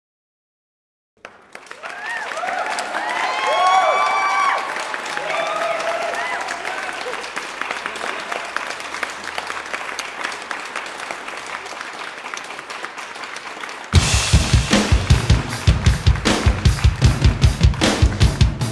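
Drum-kit music with a heavy bass drum starts suddenly near the end, beating an even rhythm of about three hits a second. Before it come high-pitched squealing vocal sounds over a patter of light taps.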